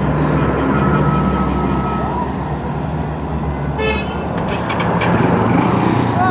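Heavy armored military vehicle's engine running steadily as it drives by, with a brief tooting tone about two-thirds of the way through.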